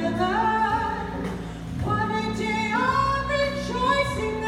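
A woman singing a hymn solo into a microphone, holding long notes that step upward, with keyboard accompaniment sustaining low chords underneath.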